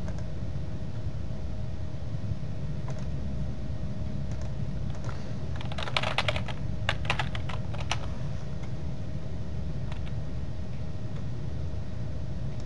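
Typing on a computer keyboard: a quick run of keystrokes from about six to eight seconds in, with a few scattered single clicks before it. A steady low hum lies underneath.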